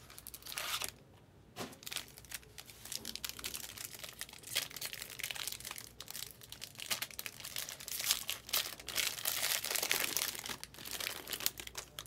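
Foil trading-card pack wrapper crinkling as it is handled and torn open by hand, in irregular bursts.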